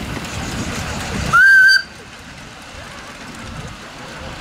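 A single short blast of a live-steam miniature locomotive's whistle, one high note about half a second long, a little after a second in. Around it, the rumble of the miniature train running on its track.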